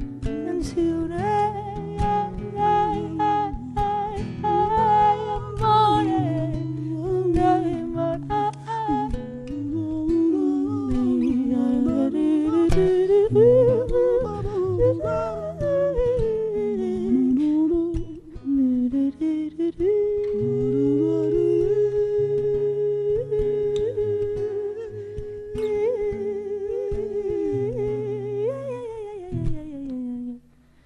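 A woman's wordless singing, a gliding melody with long held notes, over a fingerpicked nylon-string classical guitar. In the second half she holds one long steady note, which falls away near the end.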